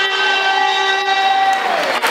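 A single long, steady, horn-like note held for about two seconds, dipping slightly and trailing off near the end.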